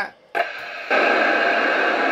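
FM amateur transceiver hissing with open-squelch static as the ISS repeater's signal fades out at loss of signal. After a brief near-silent gap the hiss comes in softly, then jumps to a loud, steady rush about a second in.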